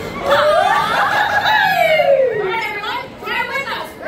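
A grito, the Mexican celebratory yell: one long drawn-out cry that rises and then slides down in pitch over about two seconds, followed by a few shorter cries.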